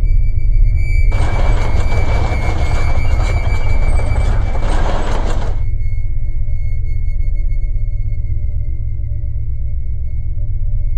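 Animated-film soundtrack: a deep sustained drone under a steady high tone. A hissing noise comes in about a second in and cuts off suddenly after about five seconds, leaving soft held musical tones.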